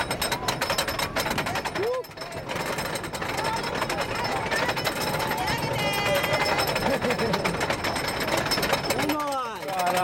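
Wooden roller coaster train climbing the lift hill: the lift chain and anti-rollback ratchet clatter in a rapid, steady run of clacks.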